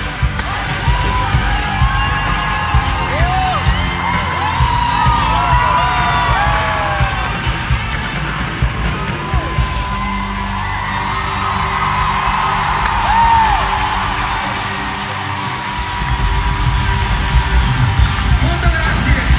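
Live pop music played loud through arena speakers, heard from inside the crowd: a heavy, pounding bass beat that eases off for a moment and comes back in strongly near the end. Fans yell and whoop over it.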